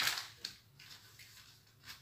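Rustling and handling of cardboard boxes and plastic packaging as they are searched through by hand, loudest right at the start and fading over about half a second, then a few faint rustles.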